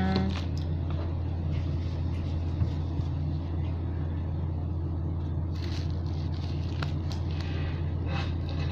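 Electric pedestal fan running with a steady low hum. Faint clicks and a brief rustle come from plastic being handled now and then.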